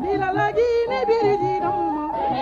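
A woman's singing voice in ornamented, gliding runs over a rhythmic instrumental accompaniment with a repeating low beat.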